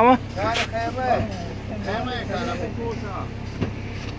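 Men talking, heard over a steady low hum of an idling vehicle.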